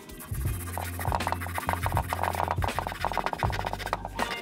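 Bare hacksaw blade sawing through a small balsa wood blank in rapid short strokes, starting about two-thirds of a second in, over background music with a steady bass line.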